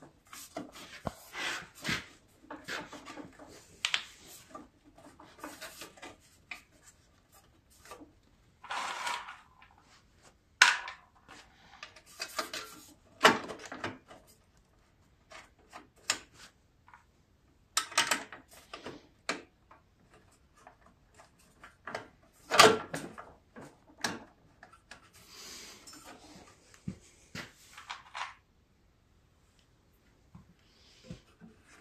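Hard plastic engine shroud being fitted by hand onto a snowblower engine: irregular knocks, clicks and short scrapes of plastic against the engine and frame, with no engine running.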